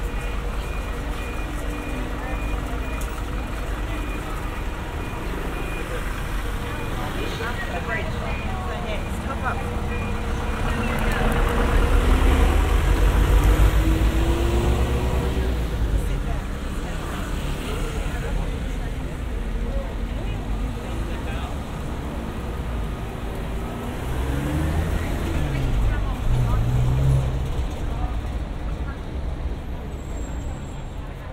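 People talking all around while two vans drive past close by; their engine noise swells about twelve seconds in and again around twenty-five seconds in.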